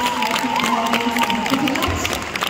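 Audience clapping and cheering over music with one long held note.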